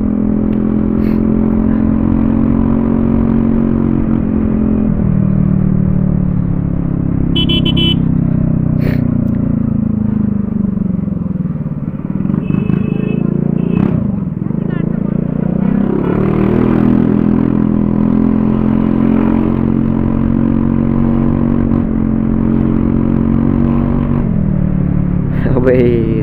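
Scooter engine running through an aftermarket exhaust while riding: a steady note at cruising speed that falls away as the throttle eases, picks up again as it accelerates about fourteen seconds in, holds, and drops off again near the end.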